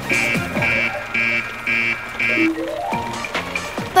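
Electronic alarm beeping five times, about two beeps a second, over cartoon background music, followed by a short rising run of notes.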